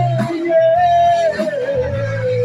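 Live band music: a female singer holds one long note that slides slowly down in pitch, over bass guitar and drums.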